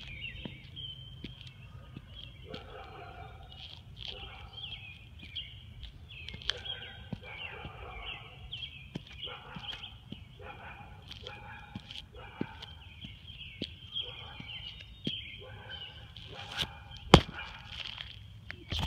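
Small birds chirping and singing over and over in the background, over a steady low outdoor rumble. Light clicks are scattered through it, and a sharp tap about a second before the end is the loudest sound.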